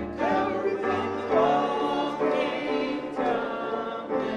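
A woman singing live into a microphone, holding notes with a slight waver, with a banjo accompanying her.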